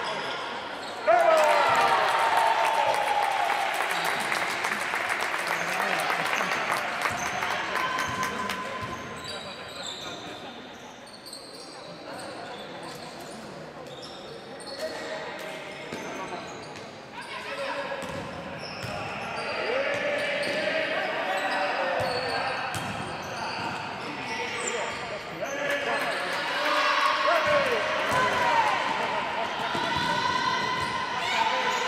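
Basketball game sounds in a reverberant sports hall: the ball bouncing on the court among players' and spectators' shouts and calls. The voices get suddenly louder about a second in, die down through the middle, and pick up again near the end.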